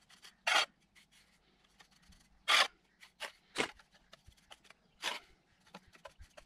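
Steel pointing trowel scraping wet mortar across slate as it pushes the mortar down into a patio slab joint to pack it without voids: about five short, separate scrapes, with faint taps between.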